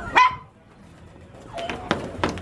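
A puppy giving a single sharp bark just after the start.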